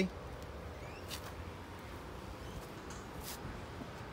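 Quiet outdoor background: a low steady rumble with a faint steady hum, and a couple of faint brief clicks, one about a second in and one about three seconds in.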